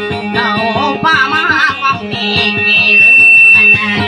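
Amplified guitar accompaniment to a Maranao dayunday song: a quick run of plucked notes, with a voice singing wavering, ornamented lines in the first half. From about two seconds in, a high steady tone rings out over the music, the loudest sound here, stopping just before the end.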